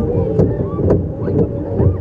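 Roller coaster train rolling along its track, a steady low rumble with a clack about twice a second, wind buffeting the microphone, and riders' voices over it.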